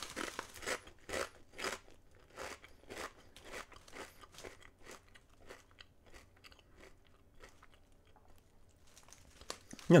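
A person chewing oven-baked potato crisps (Lay's Oven Baked), a dry crunching about twice a second that gradually fades out about two-thirds of the way in as the mouthful is finished. The oven baking makes these crisps crunchier than ordinary ones.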